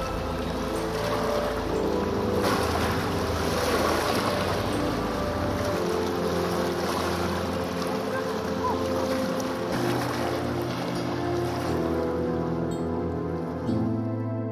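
Slow ambient keyboard music with long held chords that change every few seconds, over a steady rush of lake waves and wind. The water noise cuts out at the very end, leaving the music.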